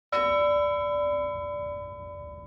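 A single bell-like chime struck once, its tone ringing on and slowly fading away.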